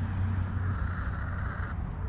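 A motor running steadily: a low hum under a rushing noise.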